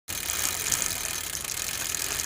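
Rapid ticking of a mountain bike's freewheel hub as the rider coasts, under a steady rush of wind and road noise on the body-mounted camera.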